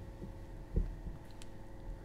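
Quiet background music bed under the narration pause: a steady low drone, with two soft, low, heartbeat-like thuds in the first second.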